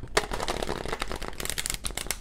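Tarot deck being shuffled by hand: a quick, continuous run of crisp card-against-card clicks.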